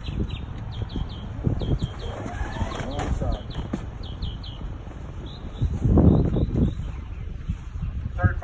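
Stacks of 2½-inch fire hose rustling and shifting as they are pulled from a fire engine's hose bed and shouldered, with a louder burst of handling noise about six seconds in. Small birds chirp repeatedly in the background.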